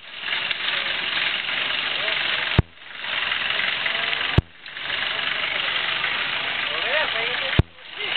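Old Jeep's engine running at low speed as it crawls along a rough dirt trail, under a steady noisy wash. Three sharp clicks, each with a brief drop-out, come about a third, half and nearly all the way through.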